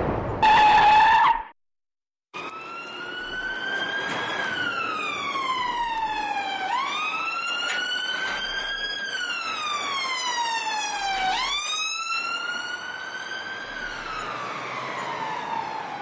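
A brief loud high-pitched tone, then after a moment of silence an emergency-vehicle siren wailing, its pitch rising and falling slowly in about three long cycles and fading out at the end.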